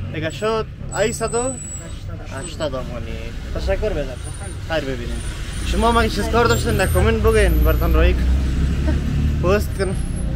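A man talking, over a steady low rumble that grows heavier about halfway through.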